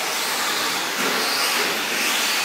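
Several 1/10-scale 4WD short-course RC trucks racing on an indoor dirt track: a steady, high hissing whir of their motors and tyres.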